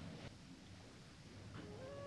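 Near silence with faint hiss; about one and a half seconds in, a soft flute note enters and steps up in pitch as background music begins.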